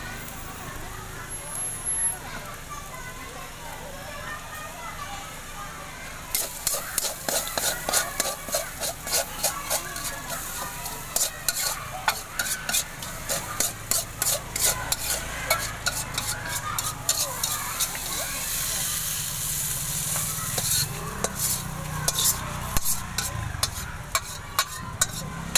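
Metal spatula scraping and clinking against an aluminium wok in quick, irregular strokes, several a second, starting about six seconds in, as a bean-sprout and jicama filling is stir-fried.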